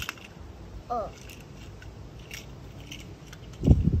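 Light clicks and scrapes of small die-cast toy cars being handled and set down on concrete, with a short low thump near the end, the loudest moment.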